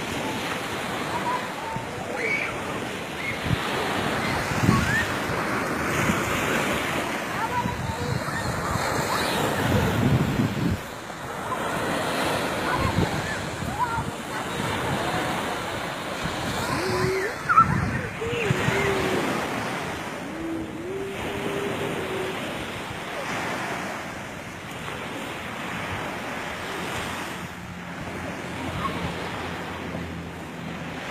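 Sea surf breaking on a beach, a continuous rushing wash that swells and falls, with wind buffeting the microphone.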